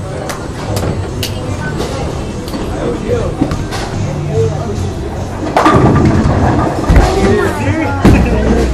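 Bowling alley din: sharp clacks of balls and pins from the lanes over a murmur of voices. From about five and a half seconds in it grows louder, with a low rumble as the bowling ball goes down the lane.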